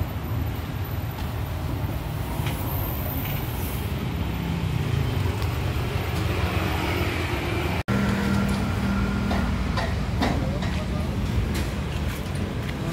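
Steady low rumble of road traffic from passing vehicles. The sound drops out briefly about eight seconds in.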